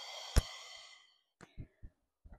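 A woman's long, forceful exhale through the mouth, about a second and a half, as she crunches up in a sit-up. A sharp click cuts in partway through, and a few faint knocks follow.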